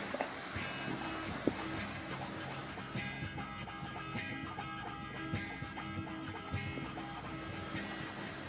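Acoustic guitar music, plucked notes at a moderate level, growing fuller with more notes from about three seconds in.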